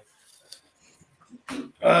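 A short hush, then near the end a man's voice making a drawn-out hesitant 'um'.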